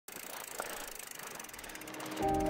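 Bicycle rear freehub clicking as the wheel turns without pedalling: a rapid, even ticking from the pawls against the ratchet.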